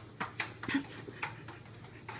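A dog's booted paws tapping and clomping on a hardwood floor as it walks awkwardly in new dog boots: a handful of short, irregular taps.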